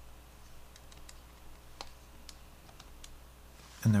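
A few light, scattered key clicks, single presses spaced irregularly, over a faint steady hum.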